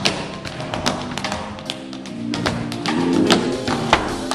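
Tap shoes striking a wooden stage floor in quick, irregular runs of sharp taps and heavier stamps. A live band with electric bass and drum kit plays underneath.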